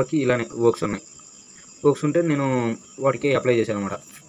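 A man's voice speaking in three short stretches, over a faint steady high-pitched whine.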